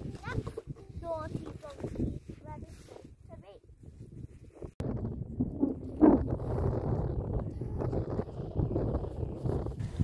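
Short, indistinct voice calls in the first half. About five seconds in, the sound cuts abruptly to a dense, steady rumble of wind buffeting the microphone during a camel ride.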